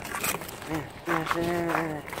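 Mostly a man's voice talking. A sharp click and a few short crackles come near the start.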